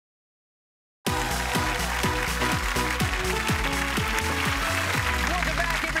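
Digital silence for about the first second, then game-show theme music starts abruptly: a fast, loud cue with a heavy beat and repeated falling bass notes, settling onto a held bass note near the end.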